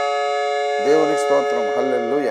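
Electronic keyboard holding a sustained final chord of a hymn, with a man's voice starting to speak over it about a second in.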